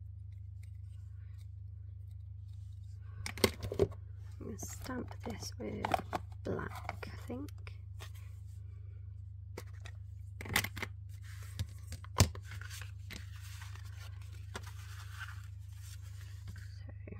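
Hands handling card stock and small craft tools on a craft mat: a few sharp clicks and knocks, the loudest about twelve seconds in, between stretches of paper shuffling and rustling, over a steady low hum.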